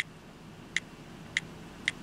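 iPod touch on-screen keyboard key clicks as letters are typed, four short, light clicks about half a second apart.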